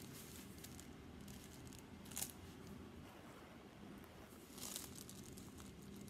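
Quiet room tone with a steady low hum, broken by two faint, brief rustles or taps, one about two seconds in and one near five seconds.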